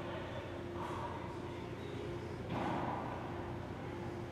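A man breathing hard through his nose, two sharp breaths about a second and a half apart as he psyches up for a box jump, over a steady low hum from the gym.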